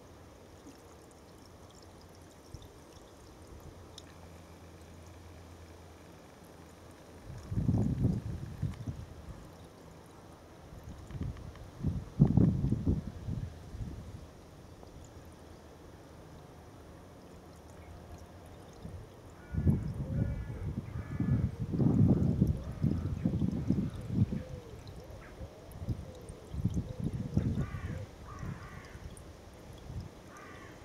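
Pond water pouring from a bucket into a stacked mesh sieve, a steady pour onto standing water. Loud low rumbles come and go several times, and a bird calls a few short times in the background, about two-thirds in and near the end.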